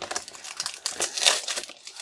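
Foil and cardboard packaging of a Match Attax trading-card multipack being torn open and handled: a run of irregular crinkles and crackles.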